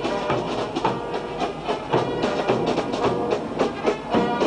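Brass band music with a steady drum beat, as from a marching band in a street parade.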